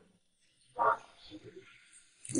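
A person's voice making one short sound about a second in, then a few faint murmurs; the rest is near silence.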